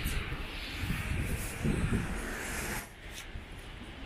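Wet city-street ambience: a steady hiss of traffic on the wet road over a low rumble, dropping a little in level about three seconds in.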